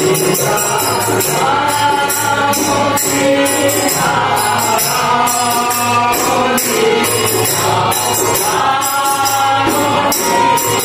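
A group of men singing a Hindu devotional bhajan in chorus, backed by a harmonium and a barrel drum. Jingling hand percussion keeps a steady, even beat.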